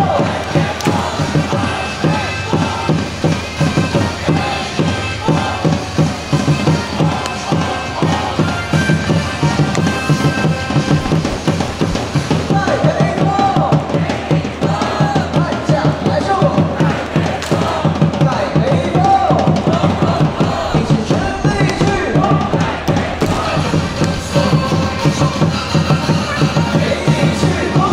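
A baseball player's cheer song played loud in a stadium, with a steady drum beat, and a crowd chanting along.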